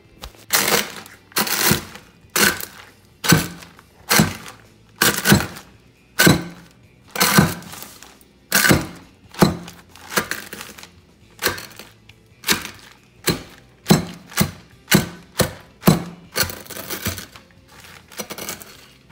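Eggshells being crushed in a zip-top plastic bag on a countertop with the bottom of a tumbler: repeated thuds with a crunch of breaking shell, roughly one or two strikes a second.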